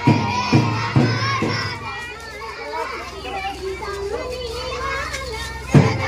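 A group of schoolchildren's voices calling out together in a procession. Regular low beats come about twice a second at the start, fade for a few seconds while the voices carry on, and return near the end.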